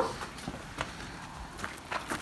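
Footsteps on a gravel driveway: a few scattered steps.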